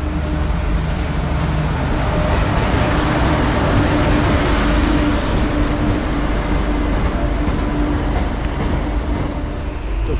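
A passenger train pulling into the platform, its locomotive and coaches rolling past close by with a loud, steady rumble. From about halfway on come a few short high squeals from the wheels as the train slows.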